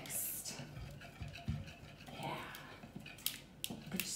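A wire whisk beating a liquid mixture in a glazed mixing bowl, with a few sharp clicks of the whisk against the bowl near the end.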